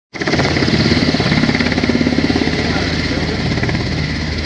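UH-60 Black Hawk helicopter flying low, its main rotor beating in a loud, rapid pulse over a steady whine from its turboshaft engines.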